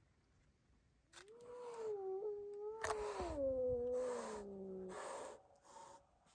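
A cat's long, drawn-out yowl lasting about four seconds, its pitch wavering and then sliding lower toward the end, with breathy noise mixed in. It is a cat's defensive call at a dog nosing close to it. A short breathy burst follows just before the end.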